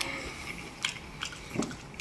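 A person chewing with the mouth close to the microphone: a few scattered soft mouth clicks and wet smacks.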